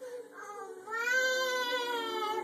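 A young girl singing at the top of her voice: after a soft start, she holds one long, high, wavering note from about a second in.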